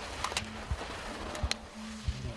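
Slalom course sound: three sharp clacks, as of gate poles being struck by the passing skier, one just after the start, one just after it, and one about one and a half seconds in, with short steady tones between them.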